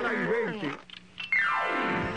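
A cartoon character's voice wavering up and down in pitch for under a second. Then, a little past halfway, a single long tone slides steadily down in pitch and runs into music.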